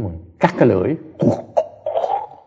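A person's voice in several short bursts, each starting sharply.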